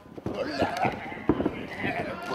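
Men shouting in short bursts, with several sharp thuds of feet and blows on a wrestling ring's canvas.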